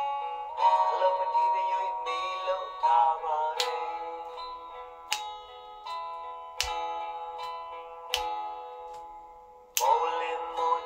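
A Burmese pop song playing back: acoustic guitar chords struck about every second and a half and left ringing, with a voice singing over them in the first three seconds.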